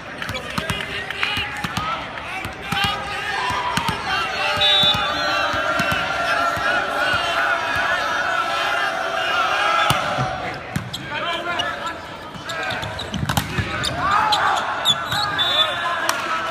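A volleyball bounced repeatedly on a hardwood court before a serve, with indistinct voices echoing in a large hall.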